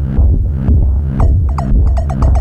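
Novation Summit synthesizer playing a deep bass patch that pulses about twice a second. About a second in, a fast run of short plucked notes with a downward filter sweep joins it.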